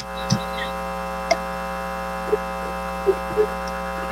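Steady electrical hum with many overtones in the sound feed, with a few faint brief clicks over it.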